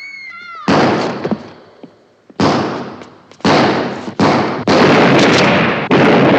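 Six loud gunshots in quick, uneven succession, each with a long echoing decay.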